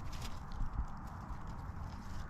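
Footsteps and light knocks on the leaf-strewn forest floor, with faint rustling, while wild chestnuts are being gathered.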